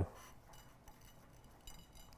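Faint light clinks and rubbing as a hand presses coarse sea salt and pepper into a raw steak on a plate.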